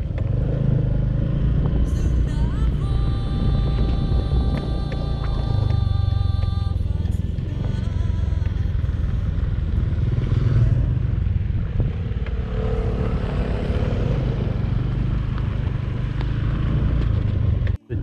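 Motorcycle engine running steadily while riding along a dirt road. A second motorcycle passes the other way about ten seconds in.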